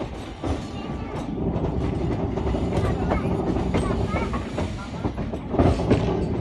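Passenger train coach wheels running over the rails and crossing through points and the diamond crossing, heard from the open coach doorway: a steady rumble with irregular wheel knocks, the loudest cluster near the end.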